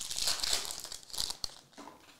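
Foil wrapper of a Select La Liga trading-card pack being torn open and crinkled by hand. It is loudest in about the first second, then thins to a few small crackles as the cards come out.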